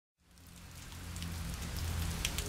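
Rain falling, fading in from silence, over a low steady hum.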